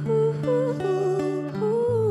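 A voice humming a wordless melody that rises and falls, over plucked acoustic guitar notes.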